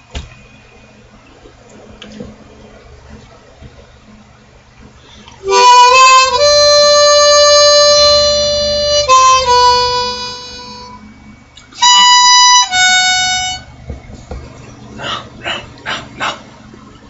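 Solo harmonica: after a few seconds of quiet, a long held note with bright overtones, then a shorter note fading away and, about a second later, a second short phrase of held notes.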